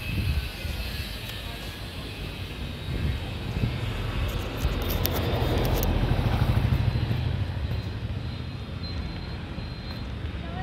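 Street traffic noise, with the low rumble of a passing motor vehicle that swells to its loudest about six seconds in and then fades.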